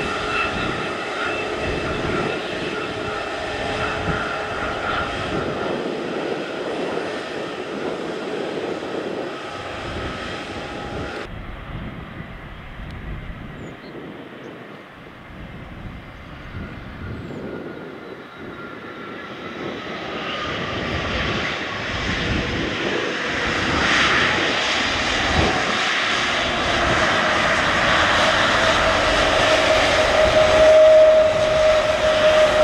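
Jet engines of Airbus A321neo airliners on the runway. First comes a steady engine whine with high tones, then an abrupt cut about eleven seconds in to a quieter landing jet whose engine tone slowly falls. Its engine noise then builds steadily louder as it rolls out after touchdown.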